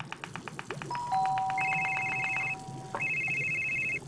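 Fast, even knife chopping on a cutting board, about eight strokes a second, fading out about two and a half seconds in. An electronic phone ringtone of steady high tones comes in over it about a second in and is the loudest sound. The ringtone pauses briefly and then stops abruptly near the end, as the call is answered.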